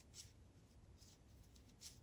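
Near silence: room tone with two faint, brief rustles, one just after the start and one near the end, from yarn being worked on wooden knitting needles.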